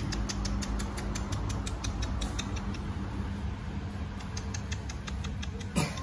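A run of quick, light clicks, several a second, over a steady low hum, with one louder sharp sound near the end.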